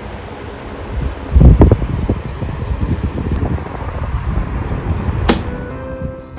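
Electric fan running, its airflow hitting the microphone in irregular low gusts from about a second in. A sharp click comes near the end.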